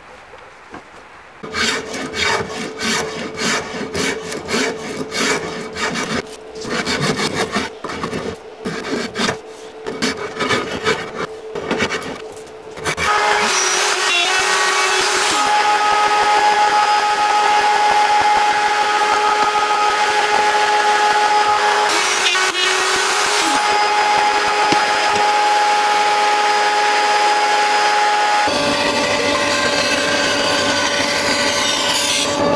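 Woodworking: hand strokes on wood, quick and irregular, for about eleven seconds. Then a power tool starts and runs steadily at a constant pitch, its pitch changing shortly before the end.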